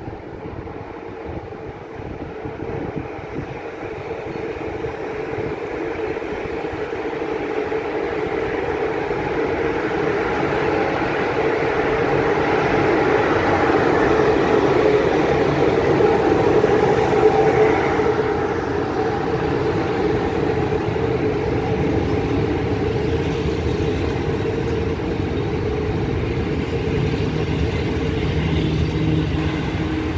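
A passenger train hauled by an electric locomotive rolls in along the platform. The sound builds steadily to its loudest about 17 seconds in as the locomotive passes, with a steady hum running through it. The coaches then roll by at a slightly lower, even level.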